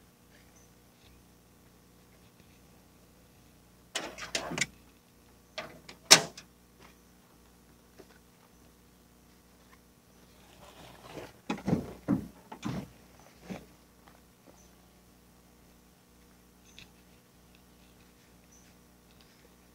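Gear being handled in a pickup truck bed: a short clatter of knocks, then one sharp bang, then a longer run of clunks past the middle.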